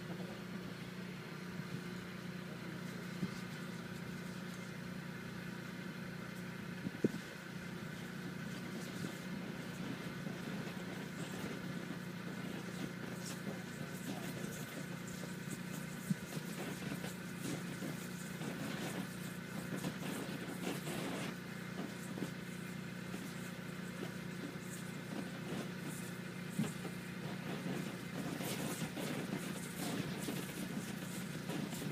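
A steady low engine hum that runs without change, with a few faint isolated clicks.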